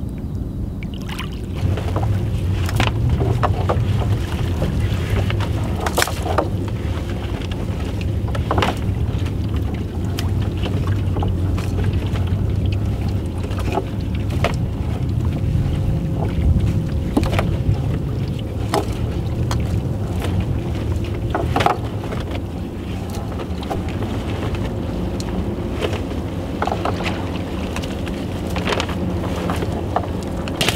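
Scattered knocks and clicks from a wooden rowboat being worked: oars in their oarlocks, then a fishing net being hauled in over the gunwale. Under them runs a steady low engine hum that comes in about two seconds in.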